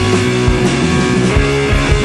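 Psychedelic blues-rock band playing an instrumental passage: electric guitar and bass over a steady drum beat of about two hits a second.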